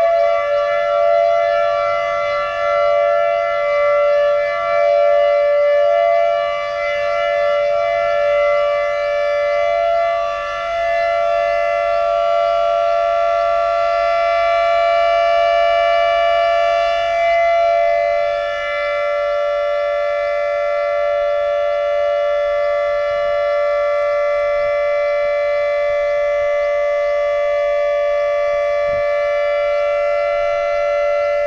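Civil-defence siren sounding one continuous steady tone that does not rise or fall in pitch. It is the signal to stand for a period of silence in tribute.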